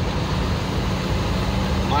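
Truck engine running steadily while driving on a rough dirt road, heard from inside the cab as a steady low drone with road rumble.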